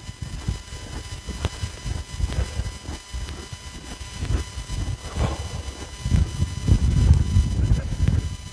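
Footsteps crunching through snow, with uneven low rumbling on the phone's microphone that grows louder in the last couple of seconds.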